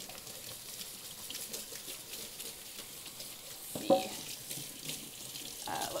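Kitchen tap running into the sink, a steady hiss of water with faint splashing as a pan is washed by hand.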